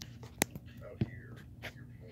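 Two sharp clicks a little over half a second apart, with faint rustling, as a diecast stock car model is handled and picked up. A low steady hum runs underneath.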